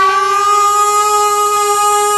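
A male devotional singer holds one long, steady sung note over instrumental accompaniment in a live Gujarati bhajan.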